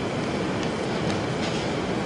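Steady background hiss and room noise of a talk recording during a pause in speech, with no distinct events.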